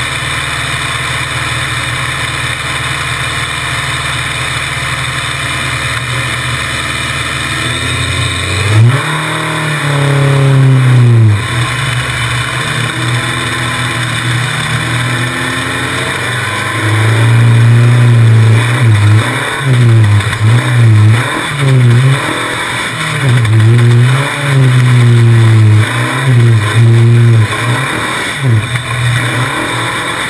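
Off-road race buggy engine idling steadily at first, then revving up sharply about nine seconds in as the buggy pulls away. From then on the engine pitch rises and falls again and again as the throttle is opened and lifted around the dirt track.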